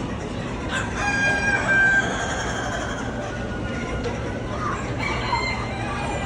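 A rooster crowing: one long crow of about two seconds starting about a second in, with a fainter call near the end.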